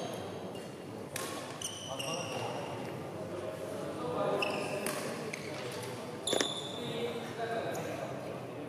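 Badminton shoes squeaking on the court in several short, sharp squeals, the loudest about six seconds in, over a murmur of voices in the hall.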